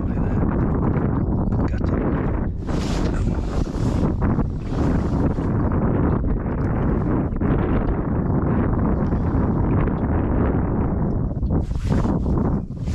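Wind buffeting the microphone: a steady, loud rumbling rush, with a few gusts of brighter hiss.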